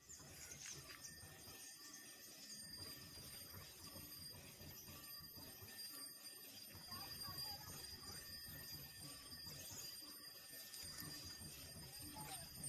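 Near silence: faint outdoor ambience with a few faint scattered ticks.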